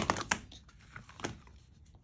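Handling noise from a pair of Hawkins cork-footbed sandals with buckled straps: a quick run of clicks and rustles at the start, and another brief clatter a little past a second in.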